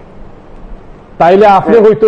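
Speech only: a short pause with faint background noise, then a man starts speaking about a second in.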